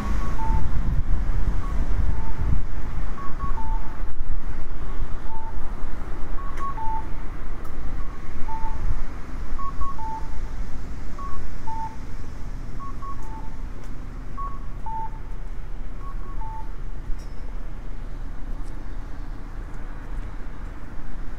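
Japanese audible pedestrian crossing signal repeating its two-note electronic tone, a higher note then a lower one, about every second and a half while the walk light is green; it stops near the end. A low rumble of wind and traffic runs underneath, louder in the first half.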